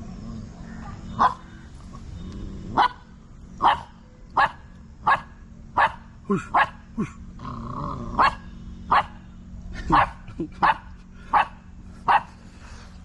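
A month-old Himalayan sheepdog puppy barking over and over in short, sharp barks, about one a second.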